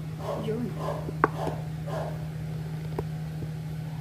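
Handling noise as the camera is moved: a sharp click a little over a second in and a softer one near three seconds, over a steady low hum and a woman's quiet speech.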